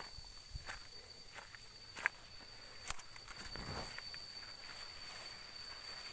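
Footsteps and the rustle of leafy undergrowth brushing past as someone walks through dense vegetation, with scattered soft crackles and snaps. A steady high-pitched tone runs underneath.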